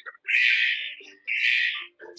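Two scratchy strokes of a felt-tip marker drawing on paper, each about half a second long, with a short gap between them.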